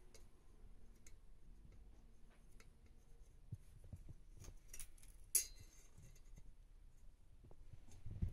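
Quiet handling sounds of marking wooden boards with a pencil against a tape measure: faint scattered clicks and scratches, with one sharper click a little past halfway.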